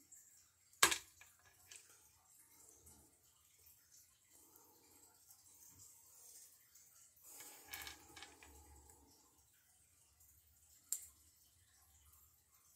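Plastic action figure being handled while parts and an effect piece are fitted on: a sharp plastic click about a second in, soft clicks and handling noise, and another click near the end.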